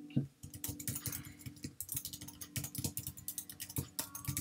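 Typing on a computer keyboard: a quick, uneven run of keystrokes over a steady low hum.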